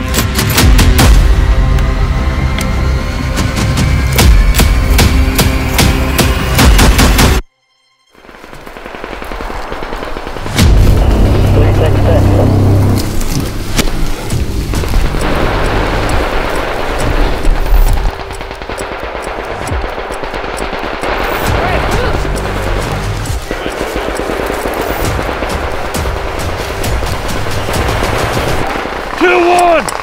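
Rapid gunfire mixed with soundtrack music. The sound cuts out abruptly for about half a second around seven seconds in, then swells back up.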